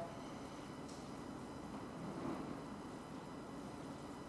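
Quiet room tone: a steady low hiss with no clear sound event, only a faint click about a second in.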